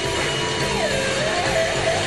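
Live rock band playing, with a distorted electric guitar sliding and bending its notes over a dense, steady wash of sound.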